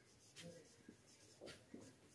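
Faint sound of a marker writing on a whiteboard: a few soft, short strokes.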